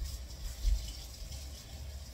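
Water running from a kitchen tap: a steady hiss that starts suddenly as the tap is turned on.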